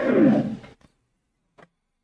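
A man's voice slides downward in pitch for under a second, then the sound cuts out abruptly to dead silence, broken once by a faint click about a second and a half in.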